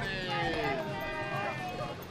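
Several people calling out and cheering in overlapping voices, with drawn-out, high greeting calls rather than plain talk: a line of cast members waving guests into the park.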